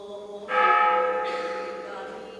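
A bell struck once about half a second in, its ringing tones fading slowly; the dying ring of an earlier stroke is heard before it.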